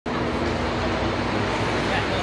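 Busy city street noise: a steady wash of traffic with a low engine hum, and people's voices mixed in.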